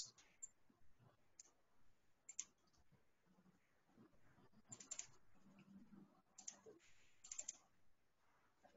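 Near silence, with a few faint, short, scattered clicks.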